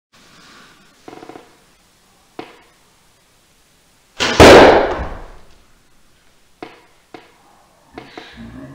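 An arrow shot from a bow and hitting a block archery target a few metres away: one loud, sharp release and impact about four seconds in, ringing out over about a second in a small room. A few soft clicks and knocks come before and after it.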